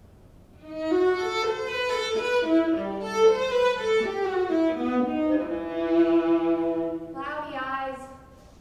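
Solo violin playing a slow phrase of sustained bowed notes, starting about a second in and stopping shortly before the end, with a lower note held beneath the melody at times.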